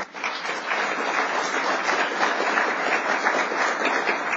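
Audience applauding in a lecture hall, a dense patter of many hands clapping that starts just after a brief pause and carries on steadily.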